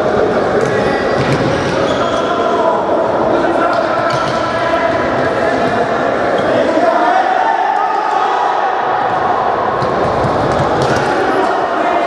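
Indoor futsal play in a reverberant sports hall: the ball being kicked and bouncing on the hard court floor, with players' voices shouting and echoing.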